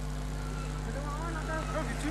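Faint voices of people at a burning market kiosk, several at once, over a steady electrical hum.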